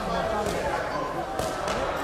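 Voices chattering across a sports hall, with two sharp thuds about a second apart: blows landing in a kickboxing sparring bout.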